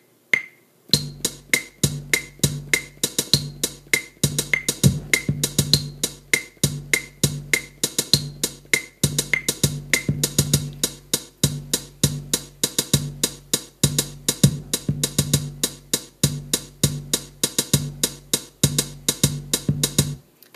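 Electronic drum beat from the iMaschine drum-pad app on an iPad at 100 tempo. The last metronome clicks of the count-off come first, then about a second in a looping bass-drum pattern starts playing and a hi-hat is tapped in on the pads over it. Metronome clicks continue through the first half, and the beat cuts off suddenly at the end.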